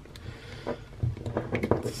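Faint clicks and handling noise of a hard plastic action figure as its small removable chest plate is worked loose.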